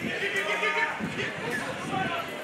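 Scattered shouts and calls from football players and spectators, overlapping with low crowd chatter.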